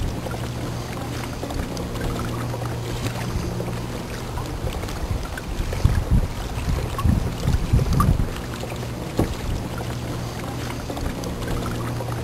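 A boat's motor running at a steady, unchanging pitch as a low hum, with water splashing and low knocks against the hull about halfway through.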